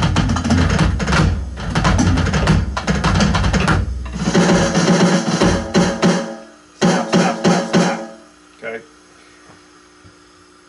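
Electronic drum kit played fast, a fill with accented strokes, in three runs with short breaks between them, stopping about eight seconds in.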